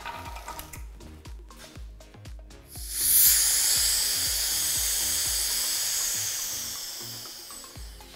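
Air hissing into an acrylic vacuum chamber through its opened lever valve, releasing the vacuum. The hiss starts suddenly about three seconds in, loudest at first, and slowly fades as the chamber fills back to atmospheric pressure, over background music with a steady beat.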